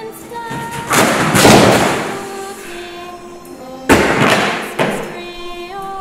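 A stack of books and magazines thrown down onto the floor, scattering in two loud crashes, about a second in and again near four seconds in, with a smaller hit just after. Music with a singing voice plays underneath.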